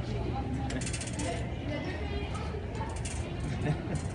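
A small metal wire-basket trolley rattling and clinking as it is pushed along a hard floor, with bursts of sharper metallic clatter about a second in and again around three seconds in.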